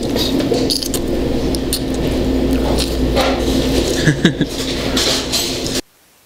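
Busy fast-food restaurant background: indistinct chatter, a few light clinks and a steady low hum. The sound cuts off abruptly near the end.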